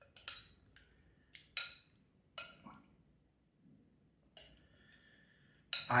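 A metal spoon knocking and scraping against a glass mixing bowl as food is scooped out onto a plate: a few short, scattered clinks, one leaving a brief glassy ring about four and a half seconds in.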